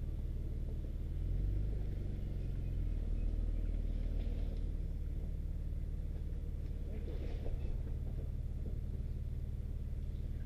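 Nissan Xterra's engine running steadily at low revs as the truck crawls over rocks and mud, the engine note swelling for a couple of seconds about a second in.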